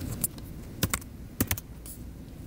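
Typing on a computer keyboard: about six separate key clicks at an uneven pace.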